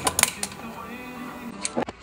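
Metal-on-metal clacks of a slide-hammer valve stem seal puller on a cylinder head, several quick ones in the first half second and two more near the end, over background music.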